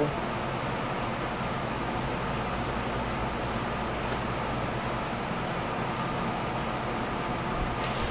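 Steady whirring hiss and hum of an electric fan running.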